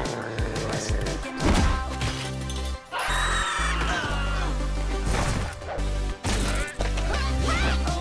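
Animated fight-scene soundtrack: driving music with a steady bass line, broken by several sharp hit and crash sound effects.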